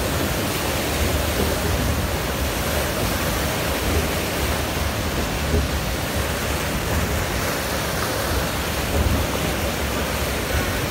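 Fast water rushing and churning through the concrete channel of an amusement-park water ride, a steady rushing noise with a fluctuating low rumble.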